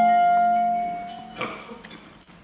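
Clarinet holding one long note over a sustained chord on classical guitar and tiple, fading as the phrase ends; a single plucked string chord about one and a half seconds in, then the music dies away into a brief pause.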